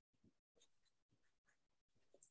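Near silence, with a few very faint short ticks.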